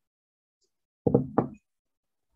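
Two quick knocks, about a third of a second apart, the second one ringing slightly longer.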